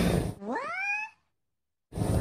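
A single short rising, animal-like call, about two-thirds of a second long, heard over dead silence after the outdoor background cuts out abruptly. Total silence follows it.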